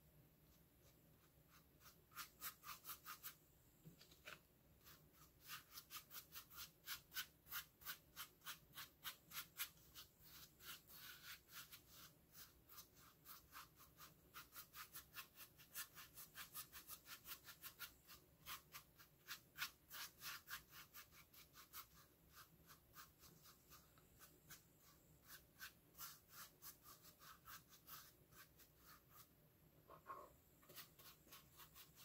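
Paintbrush stippling and scrubbing thick baking-soda paint paste onto a hollow plastic pumpkin: soft, scratchy strokes about three or four a second, in runs with short pauses.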